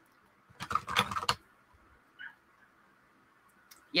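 A short burst of computer keyboard typing: a quick run of key clicks lasting under a second, starting about half a second in.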